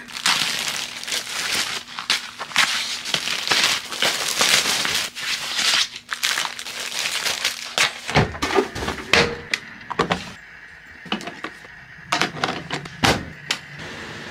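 Plastic packaging crinkling and crackling as a new bed sheet set is unwrapped by hand. About eight seconds in it gives way to softer rustling and handling of the sheets, with a few dull knocks.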